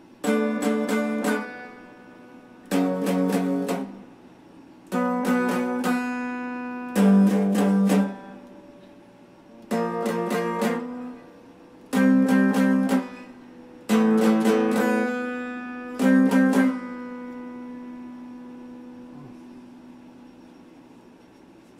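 Electric guitar strumming chords in eight short bursts about two seconds apart, each burst a few quick strokes. The last chord is left to ring out and fade.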